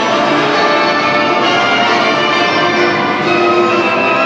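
Competition program music played over an ice rink's sound system: a full instrumental passage of many sustained notes, held at a steady level.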